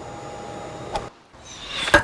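Steady hum and hiss of a hot tub's pump and jets for about a second, cut off abruptly. Then a short rising whoosh ending in one sharp crack near the end.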